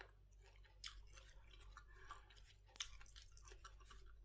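Faint chewing of a mouthful of sour mango, with scattered soft clicks and crunches. The most distinct ones come about one second and about three seconds in.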